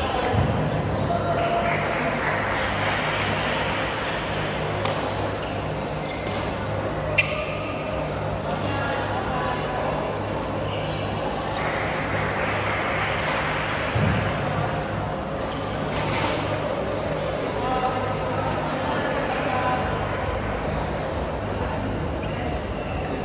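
Busy badminton hall: the chatter of many people and a steady low hum, with a few sharp smacks of rackets hitting shuttlecocks on the courts. The loudest smack comes about seven seconds in.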